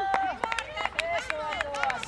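Several voices calling and shouting at a distance, overlapping in short bursts, with many short sharp clicks scattered through.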